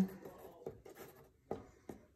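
Waterproof ink pen dabbing and scratching short marks on watercolour paper, with a few soft ticks as the tip meets the paper.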